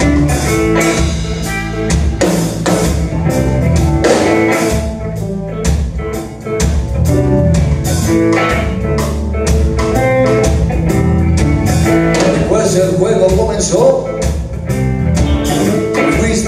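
Rock band playing live in an instrumental passage with no vocals: electric guitar, electric bass, keyboard and drum kit, over a steady beat.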